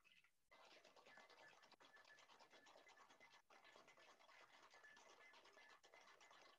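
Near silence, with a faint, fast scratchy rattle starting about half a second in.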